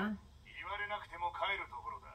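Faint, thin, tinny speech from the anime episode's dialogue playing in the background, a few phrases from about half a second in; a woman's voice trails off right at the start.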